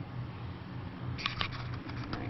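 A hand rustling through shredded paper bedding in a worm bin, with a brief crisp crackle of paper a little past halfway, over a low steady hum.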